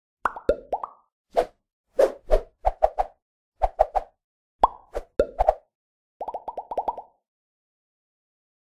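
Cartoon-style pop and plop sound effects for an animated logo intro: short pops in quick clusters, several dropping sharply in pitch, ending about six seconds in with a rapid run of about eight pops.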